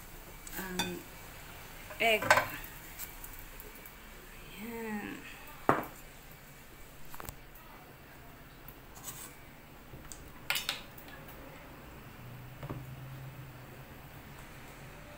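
Kitchen clatter of a spatula knocking against a wok as cooked food is scraped into a ceramic bowl, followed by dishes being set down and clinking, with about six separate sharp knocks, the loudest about two seconds in.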